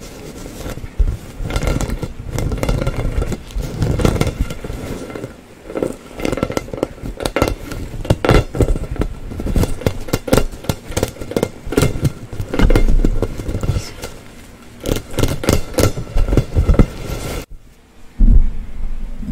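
Fingernails and fingertips tapping and scratching on a glossy plastic play ball close to the microphone: a dense, irregular run of quick taps and scrapes that cuts off sharply just before the end.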